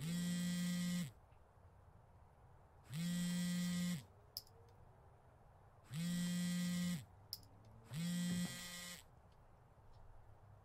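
Smartphone vibrating on a wooden table for an incoming call: four buzzes of about a second each, two to three seconds apart.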